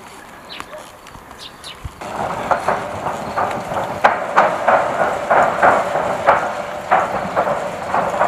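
Footsteps of several soldiers with heavy gear crossing a metal truss bridge, the deck giving an uneven run of metallic clanks, two or three a second. The clanks start suddenly about two seconds in; before that there are only faint high chirps.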